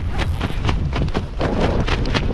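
Wind rumbling on the camera microphone under an open parachute, with a quick irregular run of clicks and rasps from a wingsuit's zipper being undone.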